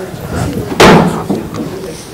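A single loud thump about a second in, with a short ringing tail, over a faint murmur of voices in a hall.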